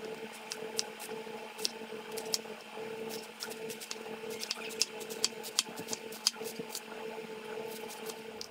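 Chef's knife thinly slicing a head of green cabbage on a plastic cutting board: irregular crisp cuts with the blade tapping the board about two times a second. A steady low hum runs underneath.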